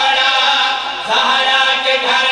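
Men's voices chanting a mourning lament in long, held sung lines through a microphone, with a short break about a second in before the next line.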